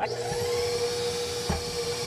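Electric stand mixer switched on and running steadily with a motor whine, beating cookie dough of creamed brown sugar, fat, eggs, vanilla and salt in a glass bowl; it cuts off at the end.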